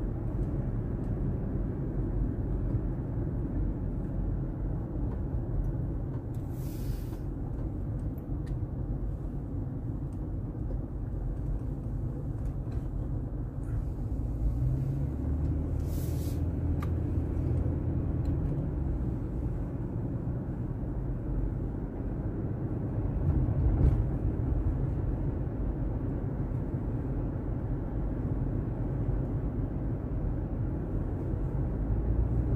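Steady low rumble of engine and tyre noise heard inside the cabin of a car driving along a country road. Two short hisses come about a quarter of the way in and again about halfway, and the rumble swells briefly near the end.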